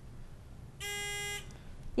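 Quiz-bowl answer buzzer: a single steady electronic buzz lasting about half a second, starting just under a second in, as a player buzzes in to answer.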